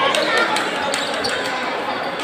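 A basketball bouncing on the court floor as it is dribbled, over a steady background of spectator chatter.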